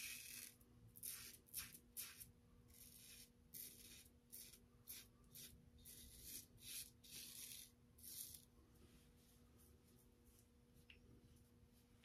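Faint scraping of a double-edge safety razor cutting lathered stubble on the neck and chin, in a quick series of short strokes, about one or two a second, that stop about eight and a half seconds in.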